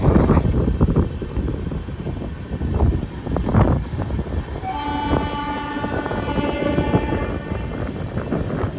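Passenger train running along the rails, heard from aboard a moving coach: a steady rumble with clattering. About five seconds in, a train horn sounds as a held chord for nearly three seconds.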